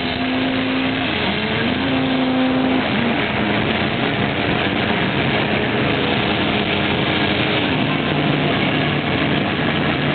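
Live rock band playing, with distorted electric guitars holding long notes that step up and down in pitch over drums, heard as a loud, dense wash of sound.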